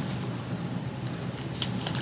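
Steady low hum with two faint, short clicks near the end.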